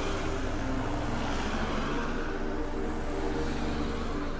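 A steady vehicle-like rumble with a loud, even rushing noise over it, under sustained music notes.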